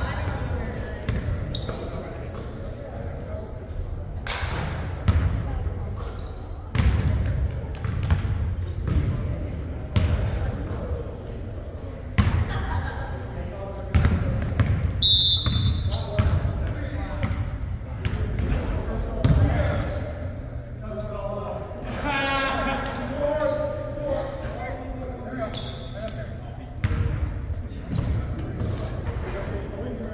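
A basketball bouncing on a hardwood gym floor and sneakers squeaking during play, with players' indistinct shouts echoing through the large hall. A short high whistle sounds about halfway through.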